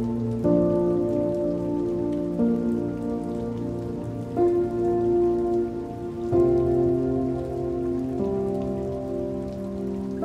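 Slow relaxation music of soft held chords over a bass, a new chord coming in about every two seconds, laid over a steady patter of rain falling on water.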